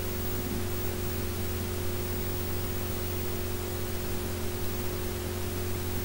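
Steady hiss with a low electrical hum running under it, unchanging throughout: the recording's background noise.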